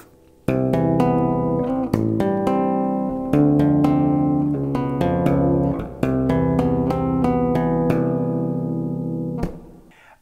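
Electric bass guitar played with tapped harmonics: the picking hand taps the strings an octave above held chord shapes, giving a chord progression of chiming, ringing chords with a percussive attack on each tap. It starts about half a second in, the chords change every second or two, and the last chord dies away near the end.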